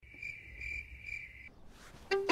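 Faint insect chirping: a high, steady trill pulsing about twice a second, stopping about one and a half seconds in.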